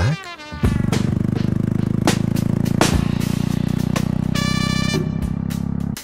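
Jawa motorcycle's single-cylinder engine running with a steady, rapidly pulsing exhaust note. It comes in abruptly about half a second in and drops away near the end.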